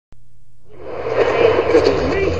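A click, then a steady low hum; about two-thirds of a second in, a murmur of voices fades in and grows louder over the hum.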